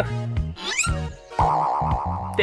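Comedy background music with a steady bass line, overlaid with a cartoon-style rising 'boing' sound effect about two-thirds of a second in, then a warbling, wobbling tone near the end.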